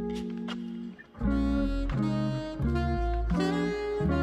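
Background music: an instrumental track whose chords change every half second or so. It breaks off briefly about a second in.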